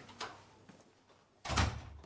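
A door shutting with a heavy thud about one and a half seconds in, after a faint click near the start.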